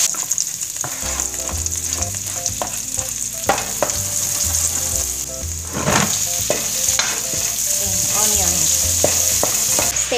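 Shrimp, then sliced onion, sizzling in hot oil in an aluminium wok, stirred with a wooden spatula that scrapes and knocks against the metal many times.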